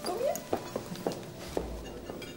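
Footsteps on a hard floor, a sharp step about every quarter to half second, as two people walk off. Just before the first step there is a short rising vocal sound, and faint steady music tones run underneath.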